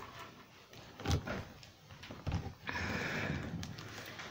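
A cardboard shipping box being cut open by hand: two light knocks about one and two seconds in, then about a second of scratchy scraping as the blade works along the box near the end.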